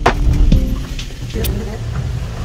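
Gondola cabin passing through a cable car station, heard from inside the cabin: a steady low machinery hum, with sharp clunks, the loudest at the very start and another about half a second in.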